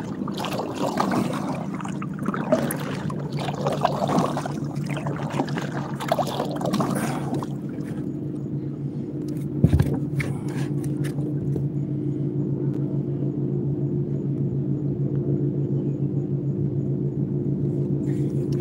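Electric trolling motor on a kayak humming steadily. For the first several seconds water splashing and wind noise ride over it, and there is a single knock about ten seconds in.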